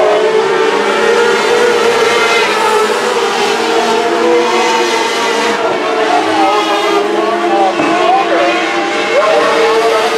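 A pack of modlite race cars running laps on a dirt oval: several engines sound at once and mostly hold a steady pitch.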